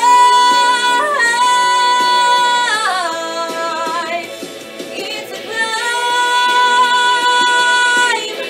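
A young woman singing a song, holding a long high note, sliding down from it about three seconds in, then holding another long note near the end.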